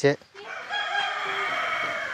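A rooster crowing: one long, drawn-out call lasting about a second and a half, starting about half a second in.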